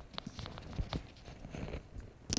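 Footsteps on a hard floor: a few irregular light knocks and clicks.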